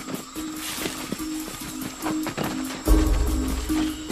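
Action film score with a pulsing, repeating rhythm and percussive hits, and a loud deep rumble about three seconds in.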